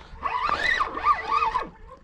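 An animal calling: a run of high notes that rise and fall, lasting about a second and a half.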